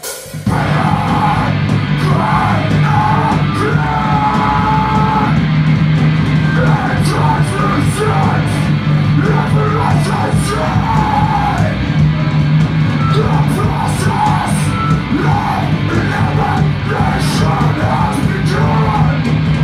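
Heavy metal band playing live: bass guitar, electric guitar and drum kit come in together about half a second in, loud and dense, with shouted vocals over the top.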